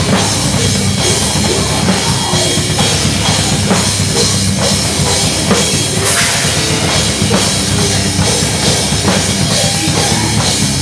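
Hardcore metal band playing live and loud: distorted electric guitar, bass and a driving drum kit with heavy bass drum, with a crash about six seconds in.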